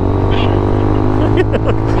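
Motorcycle engine running steadily at a constant low road speed, with wind noise on the microphone.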